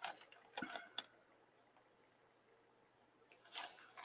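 Near silence, broken by a few faint short clicks and rustles in the first second from hands and a fine-line pen on paper, and a short breath near the end.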